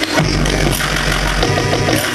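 Live electronic music played loud over a club sound system: a dense beat with deep sub-bass. The deep bass drops back in with a hit just after the start.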